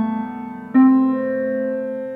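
Quiet Piano lo-fi piano software instrument on its Autumn Nights preset, playing sustained chords: a held chord fades away, then a new chord is struck about three-quarters of a second in and rings on.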